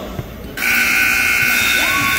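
Gym scoreboard buzzer sounding a loud, steady tone that starts suddenly about half a second in, ending the wrestling bout. A voice rises over it near the end.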